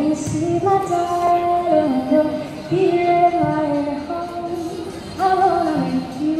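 A woman singing long, held notes that slide between pitches, with a strummed acoustic guitar, amplified through a small amp and microphone.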